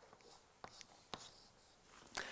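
Chalk writing on a blackboard, heard faintly: soft strokes with a couple of sharp taps as the chalk meets the board.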